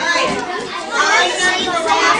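A classroom of young children talking and calling out at once, many overlapping voices.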